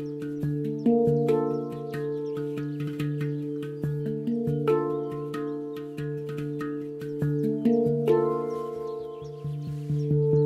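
Handpan played with the hands: a steady stream of struck notes, several a second, each ringing on, with low notes sustaining under a run of higher ones.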